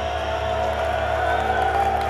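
A live rock band's electric guitars and bass ringing out on a held final chord, with steady sustained amp tones and a higher tone that rises slightly.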